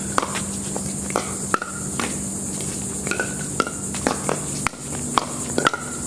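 A pickleball rally: a run of sharp hollow pocks as paddles strike the plastic ball, about half a second to a second apart, some quicker pairs in the net exchanges.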